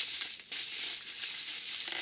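Plastic bubble wrap crinkling as hands handle it and pull it open, with a brief lull about half a second in.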